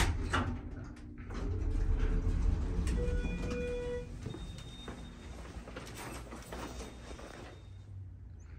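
Schindler-modernized Dover Impulse hydraulic elevator: a low rumble as the car settles and its doors slide open, with a short electronic tone about three seconds in.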